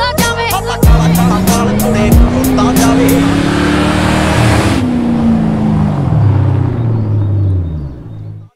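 Car engine sound effect revving, its note climbing for about four seconds and then winding down, over the last drum hits of a hip-hop beat, which stop about two seconds in.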